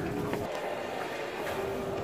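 General room noise of a large, quiet supermarket: a steady haze of sound with faint held tones near the start and again near the end.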